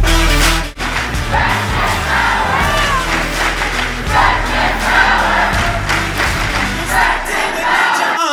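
A large crowd of teenagers cheering and shouting together. It starts just under a second in, after a brief drop in the music, and music carries on faintly underneath.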